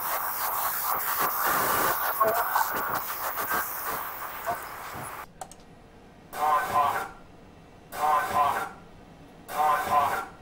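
Cockpit voice recorder playback of crew speech under heavy hiss. From about five seconds in, the same short spoken snippet repeats on a loop about every second and a half, in thin, narrow-band sound. The snippet is a checklist reply that the analyst hears as "off".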